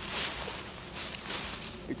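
Dry fallen leaves crunching and rustling as someone slides and scrambles down a leaf-covered slope, uneven and close to the microphone.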